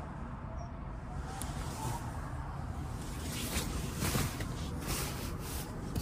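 Rustling and rubbing of clothing and a hand moving over the leather rear seat inside a car cabin, irregular and more frequent from about halfway through, over a steady low rumble.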